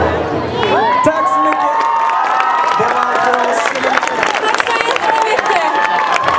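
Audience of mostly children cheering, shouting and clapping as the band's final song ends. Many high voices overlap throughout, with scattered hand claps.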